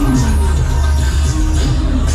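Loud music with a heavy, steady bass.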